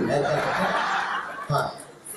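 Audience laughing, the laughter fading away over about a second and a half, with a single short thump near the end.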